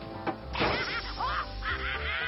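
Cartoon soundtrack: a cartoon character's exaggerated, warbling laugh in repeated rising-and-falling cries, over background music.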